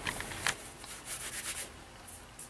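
Shredded cellulose insulation made of recycled newspaper, pulled apart and crumbled by hand: a soft, dry rustling in short bursts, the sharpest about half a second in.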